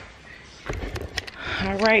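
Handling noise as the camera is picked up: a run of knocks and rustles starting about two-thirds of a second in, then a woman's voice says "All right" near the end.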